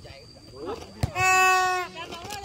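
A single sharp knock about halfway in, then a loud, drawn-out shout held on one steady pitch for almost a second, with quieter calls from players around it.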